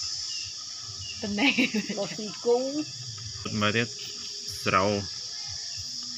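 A steady, high-pitched insect chirring that runs on unchanged, with short spoken phrases over it.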